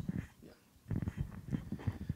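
Low, muffled speech: a short 'yeah', then about a second of low mumbling.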